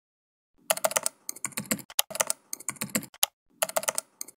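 Computer keyboard typing: bursts of rapid keystrokes with short pauses between them, starting about half a second in.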